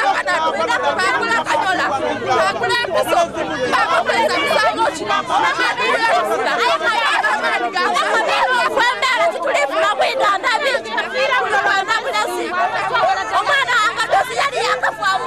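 A woman speaking loudly and emphatically, with other voices talking over one another around her.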